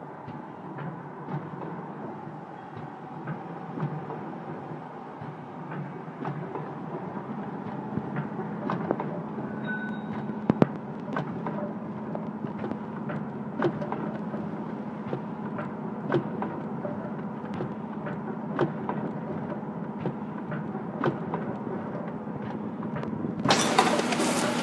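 Vertical pouch packing machine with a vibratory feed hopper running: a steady mechanical hum with a faint held tone, punctuated by irregular sharp clicks and knocks from its moving parts. Near the end a louder, noisier sound cuts in.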